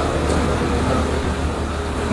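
Steady room noise of a meeting hall picked up through a handheld microphone, with a constant low hum under it.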